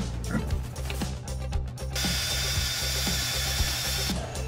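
Background music with a steady beat; about halfway through, a handheld rotary power tool with an abrasive attachment starts up on a car's wheel hub, a steady high-pitched grinding hiss as it cleans rust off the hub face.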